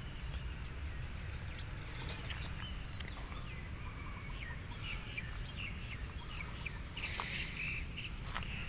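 Small birds chirping in short, scattered notes, thickest in the second half, over a steady low rumble. A brief noisy rustle comes near the end.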